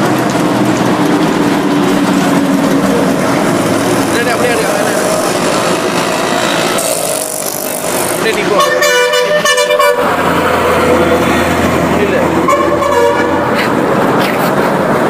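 Busy street traffic noise with vehicle horns: one horn sounds for over a second about two-thirds of the way in, and another sounds briefly near the end.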